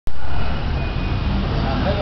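Street noise: a steady low rumble of traffic, loudest in the first half second, with a voice starting near the end.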